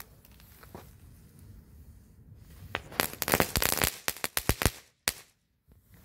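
Crackling ball firework (Comet Knatterball, a Category F1 ground item) going off: a quick run of sharp crackling pops lasting about two seconds, starting nearly three seconds in, with one last pop about five seconds in. A short burn with good crackling.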